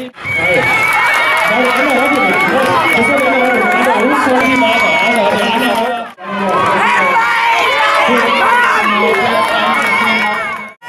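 A crowd of spectators lining a race course, many voices chattering and cheering the runners on, with a high wavering tone running through much of it. The sound cuts out briefly about six seconds in.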